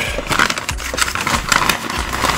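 Paper fast-food take-away bag crinkling and rustling as it is opened and handled, with irregular small crackles throughout.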